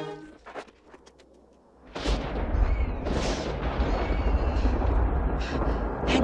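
A short lull with a few faint clicks, then about two seconds in a loud, deep rumbling blast sets in and keeps rumbling, with crackling on top, like an explosion or a collapse of rock. The last notes of background music end just as the lull begins.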